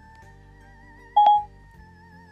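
A single short electronic beep from the iPhone about a second in, over faint steady wavering tones.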